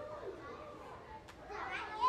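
Faint background chatter of children's voices: a low classroom murmur with no clear words.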